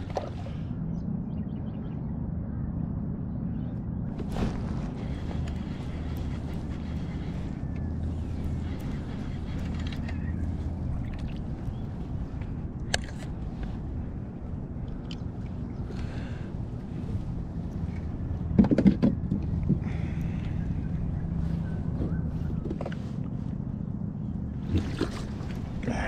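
Steady low rumble of wind and water around a fishing kayak, with a few sharp knocks and a short louder burst of handling noise about two-thirds of the way through.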